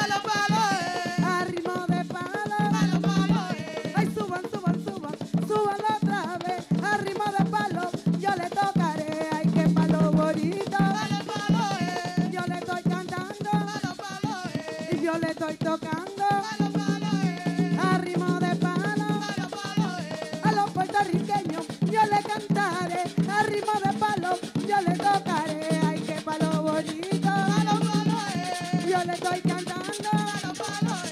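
Live Afro-Dominican palo music: hand drums and other percussion keeping a driving rhythm under women singing.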